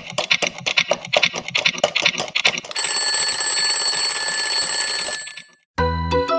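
Mechanical alarm clock ticking fast and evenly, then its bell ringing loudly for about two and a half seconds before cutting off abruptly. A short musical jingle starts just before the end.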